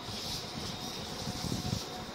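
Faint rustling and handling noise, with small bumps about three-quarters of the way through, over a steady background hiss.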